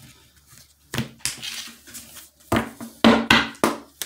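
A deck of oracle cards is picked up off a wooden table and shuffled. There is a soft scrape and rustle about a second in, then a quick run of card slaps and riffles near the end.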